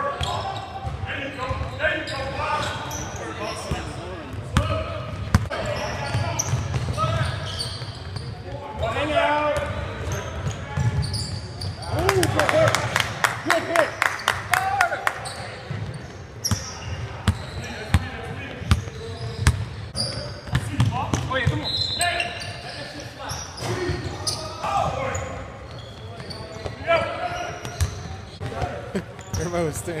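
A basketball bouncing on a hardwood gym floor during a game, with sharp knocks scattered throughout and a quick run of them about halfway through. Players' shouts and chatter ring out in the large gym.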